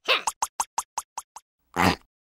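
Cartoon sound effect: a quick run of about eight short plops at about five a second, getting fainter, then a single longer burst near the end.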